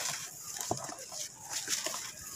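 A dried, gritty red sand cake crumbled by hand: irregular crunching and crackling as lumps break off, with loose grit trickling down into a tub.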